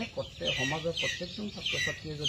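Chickens calling in short, high, falling calls, about two a second, behind a man's speech.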